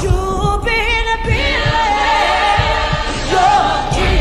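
Music with singing: voices holding long, wavering notes that glide up and down.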